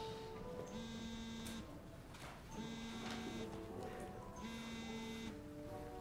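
A mobile phone buzzing on vibrate with an incoming call: three buzzes of just under a second each, evenly spaced, over soft background music.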